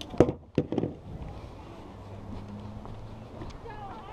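Three sharp knocks within the first second as fishing gear and a plastic bucket are handled, then a quieter stretch of outdoor background with a faint low hum.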